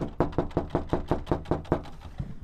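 Knocking rapidly on a house's front storm door: about ten quick, evenly spaced knocks, each ringing briefly.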